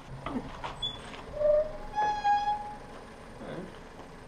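Timber hut door creaking on its hinges: a short squeak about one and a half seconds in, then a longer, higher squeak just after.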